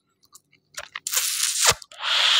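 Close-miked mouth noises: a few soft lip and tongue clicks, then a loud breath into the microphone about a second in.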